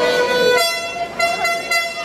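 A horn blown in three short blasts at one steady pitch, over arena crowd noise, after a brief shout at the start.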